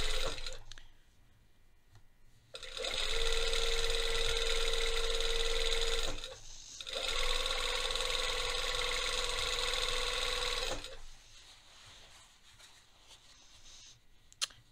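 Industrial straight-stitch sewing machine sewing through knit fabric in three runs of a few seconds each. It stops briefly between runs and stays quiet for the last few seconds.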